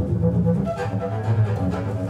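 Double bass played with a bow: low, sustained notes that move from one to the next.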